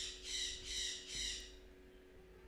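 Pen stylus scratching across a drawing tablet in four short strokes, about one every 0.4 s.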